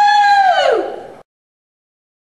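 A woman's high, held "woo!" shout that slides down in pitch and fades out just over a second in.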